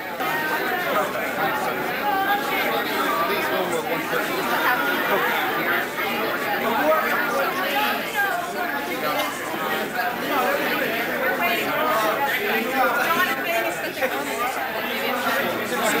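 Many people talking at once: indistinct, overlapping crowd chatter with no single voice standing out.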